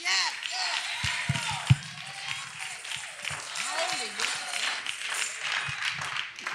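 Church congregation calling out responses over one another, with scattered clapping. A few sharp low thumps come between about one and two seconds in.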